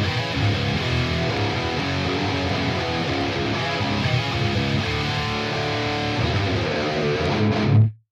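Recorded electric guitar chords played back through an amp plugin and the Cab Lab 4 impulse response loader, with two speaker-cabinet impulse responses blended. The playback cuts off suddenly just before the end.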